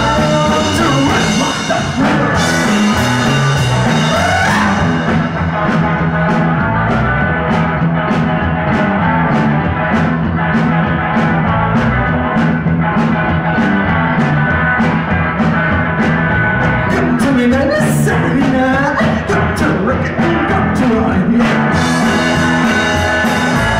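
Rockabilly trio playing: a walking bass line under a steady drumbeat, with singing in parts.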